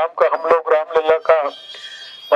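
A man making a speech in Hindi into a handheld microphone. He pauses about a second and a half in.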